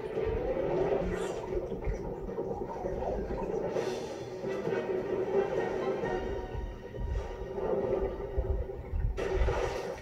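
Film soundtrack music holding a sustained note over a low rumble, heard off a television. There are short noisy sweeps about four seconds in and again near the end.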